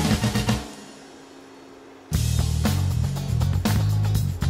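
Background music with a drum-kit beat and heavy bass. It thins out to a quiet break about half a second in, and the full beat comes back sharply about two seconds in.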